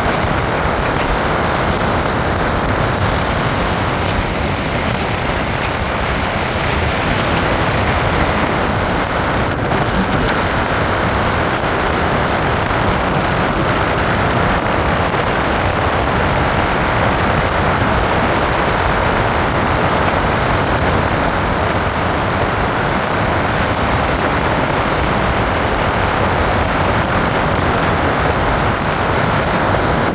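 Steady rush of wind and tyre noise from a vehicle driving at speed, with no engine note standing out.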